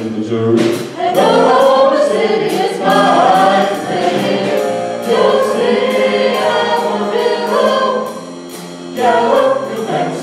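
Mixed vocal ensemble singing in close harmony through microphones and a PA, with a sharp steady beat about twice a second. The singing drops quieter briefly near the end, then comes back in full.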